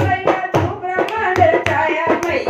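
Devotional Hindu bhajan to the Mother Goddess: a woman singing over steady hand-drum beats and rhythmic hand claps.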